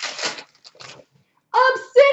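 Brief crinkling rustle of a trading-card pack's wrapper in the hands, loudest in the first half second, followed by two short fainter rustles.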